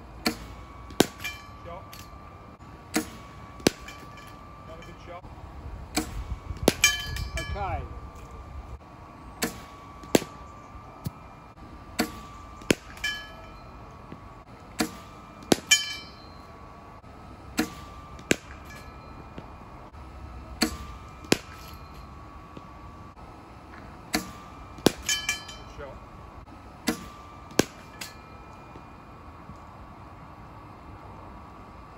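Cricket bat striking balls fed by a bowling machine. Sharp cracks come every two to four seconds, often in pairs about half a second apart, over a faint steady high whine from the machine.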